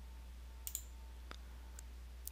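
A few short computer mouse clicks over a faint steady hum.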